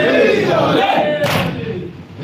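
A crowd of men chanting a noha refrain together in mourning, joined about a second in by a sharp slap of many hands striking chests together in matam.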